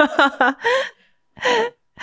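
A woman laughing: a quick run of short pitched laugh pulses, then two separate breathy gasping bursts with pauses in between.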